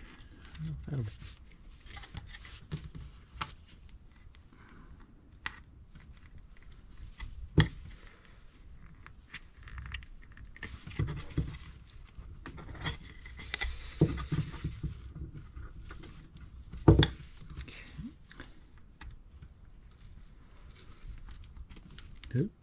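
Small wooden kit parts and a clear plastic disc being handled and fitted together: scattered light clicks and scrapes, with two sharper snaps, the louder one about three-quarters of the way through.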